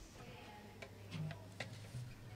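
A few faint, scattered clicks and taps over a steady low electrical hum.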